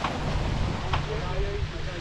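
Wind rumbling on the microphone with water rushing and splashing along a sailboat's hull at speed, with a couple of sharp splashes, one at the start and another about a second in.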